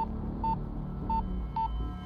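Electronic torpedo-alert alarm beeping: short, identical high beeps about twice a second, four in all, over a low drone.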